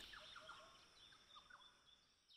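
Near silence: faint outdoor ambience with a few short, faint bird chirps, mostly in the first second and a half.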